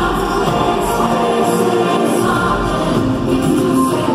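Live pop concert music: singing over a full band, played through an arena's PA and heard from the upper stands.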